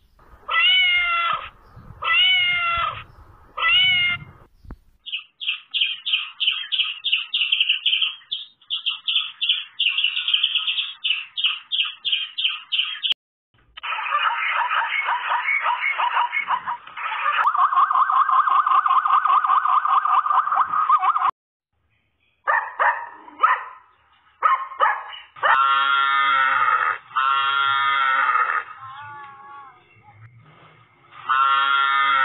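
A domestic cat meowing three times, each meow about a second long with a rising-then-falling pitch. A run of rapid high chirps follows, then a long harsh pulsing call, then several short calls from other animals.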